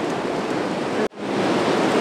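Steady rush of ocean surf breaking on a beach. About halfway through it cuts out abruptly for an instant, then comes back.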